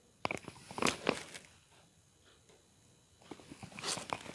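A run of light clicks and taps as objects are handled on a desk, then a short quiet stretch and a few more small taps near the end.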